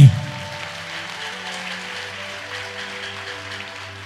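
Electronic keyboard playing soft sustained chords, the held notes shifting slowly, over a faint steady hiss. A man's voice finishes a word right at the start.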